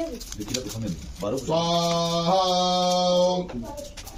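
A male voice chanting a Sanskrit mantra, then holding one long note for about two seconds, its pitch stepping up slightly halfway through.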